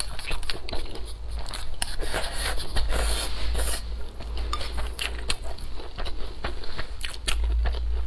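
Close-up eating sounds: wooden chopsticks clicking against a ceramic bowl of rice and green chili peppers, with chewing and biting of the food. Many sharp clicks throughout, with denser, noisier stretches of mouth sounds about three seconds in and near the end.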